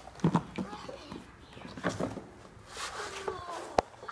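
Quiet voices with several sharp clicks and knocks of hard plastic toy laser-tag guns being handled in their case, the sharpest click near the end.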